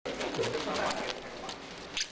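Blue nitrile exam gloves being pulled on and worked over the fingers, the rubber stretching and rubbing against skin and the other glove.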